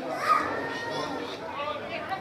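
Faint, distant voices of players shouting and calling out across a football pitch, picked up by the field microphone under a lull in the commentary.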